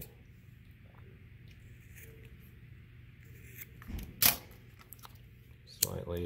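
Sharp scissors snipping off a leftover strand of nylon paracord: a quiet stretch of handling, then a crisp cut about four seconds in, heard as two quick clicks with the second the loudest.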